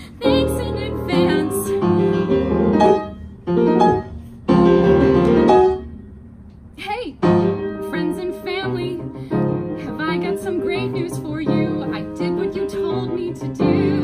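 A woman singing a musical-theatre song with piano accompaniment, at times half-spoken. The music thins out briefly about six seconds in, then comes back with a sliding vocal note.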